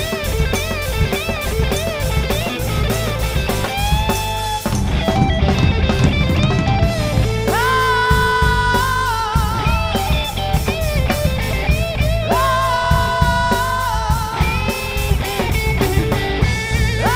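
Hard rock band playing: electric guitar and drum kit, with a male singer holding long, high notes that waver at their ends, from about halfway through.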